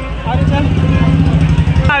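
A low, steady engine-like drone over the voices of a dense crowd at a busy fair.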